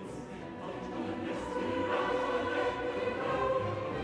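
Mixed chorus and symphony orchestra: the voices sing "When he rode into the lists, the arch of heaven grew black" in staggered entries over pulsing orchestral chords. The sound grows steadily louder in a crescendo.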